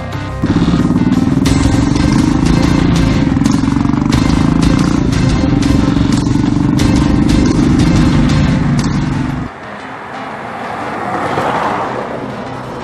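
Motorcycle engine running steadily at speed, heard close up from on the bike. It comes in suddenly just after the start and cuts off sharply about nine and a half seconds in, with background music over it.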